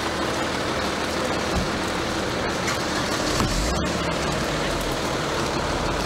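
Steady outdoor vehicle and traffic noise around a car, with a few sharp clicks and knocks in the middle.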